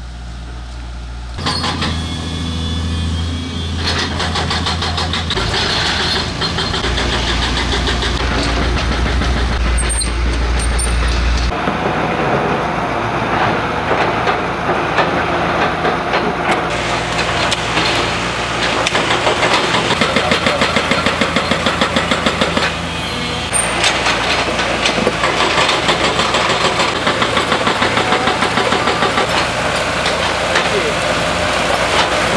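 Diesel engines of earthmoving machinery such as an excavator and tractors running at a roadworks site. The low rumble shifts abruptly a few times early on, and in the second half there is a fast, regular pulsing.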